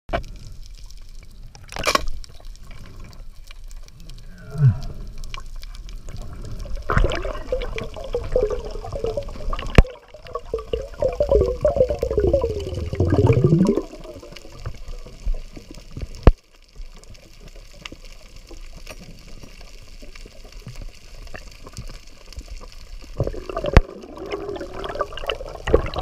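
Water bubbling and sloshing as heard underwater by a diving camera, with a long stretch of gurgling in the middle. A few sharp clicks are spread through it.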